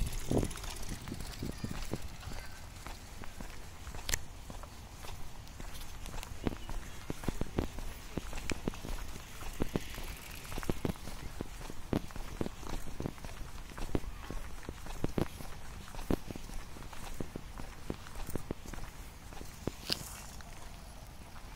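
Footsteps on a paved park path, about two steps a second, with a sharp click about four seconds in and low wind rumble on the microphone at the start.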